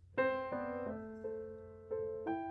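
Grand piano beginning a slow solo introduction: a loud first note about a quarter second in, then a few more notes and chords, each struck and left ringing as it fades.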